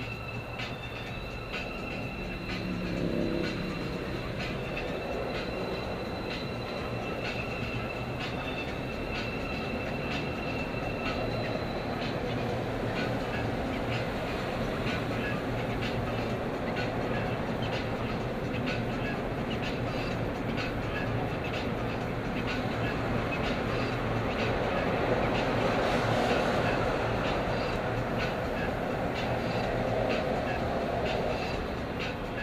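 Engine and tire noise heard inside a car's cabin on the freeway: a steady rumble that grows louder as the car picks up speed. A short rising engine note comes about three seconds in.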